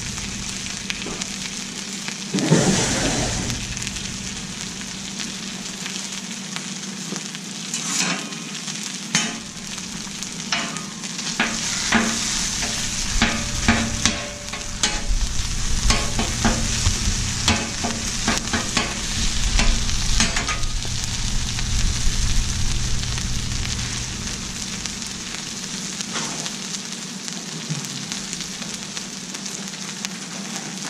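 Chorizo sizzling on a hot Blackstone flat-top griddle, with a metal spatula scraping and tapping against the griddle plate as it chops and spreads the meat through the middle stretch. A low rumble runs under the middle part as well.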